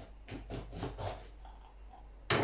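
Kitchen knife cutting through a green bell pepper onto a cutting board: a quick run of short slicing strokes, several a second.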